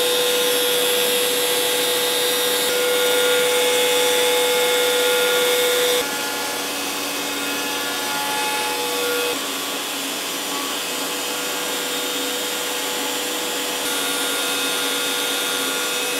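DeWalt compact router on an X-Carve CNC machine running at speed with a 1/16-inch ball conical bit carving a rope pattern into hardwood, with dust extraction drawing through the brush dust boot: a steady whine over cutting noise. The spindle speed is a little too low for such a fine cutter, causing slight chip-out. The sound changes abruptly and drops slightly about six seconds in, and again about nine seconds in.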